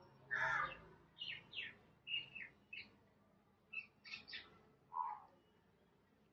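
A bird chirping in a run of short, high calls, many sliding downward in pitch, with a short pause about three seconds in.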